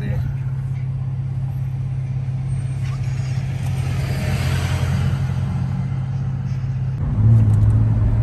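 A car's engine and road noise heard from inside the cabin as it drives off and along the street: a steady low engine hum, with a swell of road noise in the middle. Near the end the engine note drops a little in pitch and gets louder.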